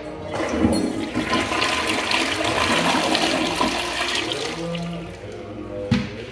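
Glacier Bay Power Flush toilet flushing: a loud rush of water that holds for about five seconds and then tapers off. A single sharp knock comes near the end.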